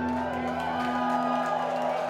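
A live rock band's last note ringing out as one steady held tone after the full band has stopped, while the audience cheers and whoops over it.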